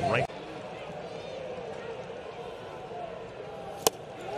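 Steady ballpark crowd background. Near the end comes a single sharp pop: a splitter smacking into the catcher's mitt as the batter swings through it for strike three.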